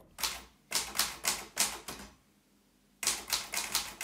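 Manual typewriter being typed on: a run of sharp key strikes, a pause of about a second, then another quick run of strikes.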